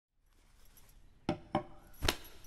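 Two short, sharp knocks about a quarter of a second apart, with a little ringing after each, over near silence.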